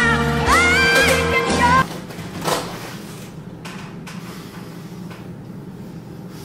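Live female pop vocal: a powerful belted high note that slides up and is held with vibrato over band accompaniment, cutting off abruptly about two seconds in. After that only faint room noise with a few soft knocks remains.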